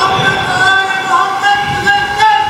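A congregation reciting salawat aloud together, many voices drawn out in long held tones.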